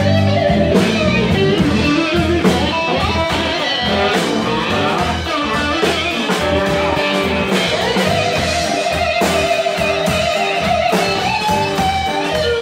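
Electric blues band playing live: electric guitars, bass guitar and drum kit in an instrumental passage, with a lead line of long held notes in the second half.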